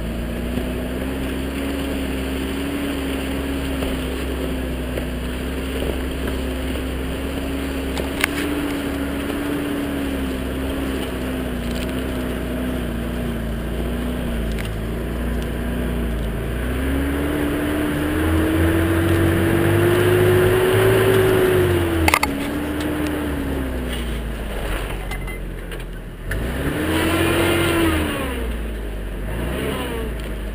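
1984 Toyota SR5 4x4 pickup's engine running while it drives off-road. The pitch climbs over a few seconds about two-thirds of the way through, a sharp knock comes as it drops, and the engine revs up and back down once briefly near the end.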